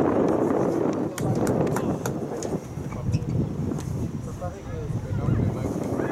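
Outdoor field ambience: wind rumbling on the microphone throughout, with faint, indistinct voices in the distance.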